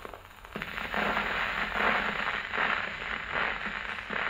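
Steel needle in a Meltrope III soundbox running in the lead-in groove of a very worn 78 rpm shellac record on an acoustic EMG horn gramophone: loud surface noise and crackle, with no music yet. It comes in about half a second in and swells and fades regularly, about every three-quarters of a second.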